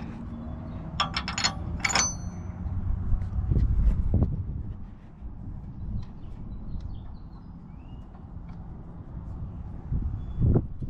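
Metal hitch pin being worked into the pin hole of a steel hitch receiver: a few sharp metallic clicks about a second in, ending in a clink with a short ring, then low handling rumble and faint scattered ticks as the pin is pushed through.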